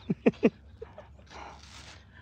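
A short laugh in three quick pulses right at the start, followed by a soft breathy hiss.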